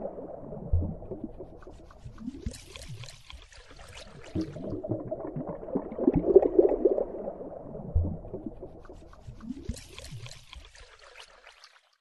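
Underwater ambience: low bubbling and gurgling water, with two spells of higher fizzing bubbles. It repeats as a loop of about seven seconds and cuts off just before the end.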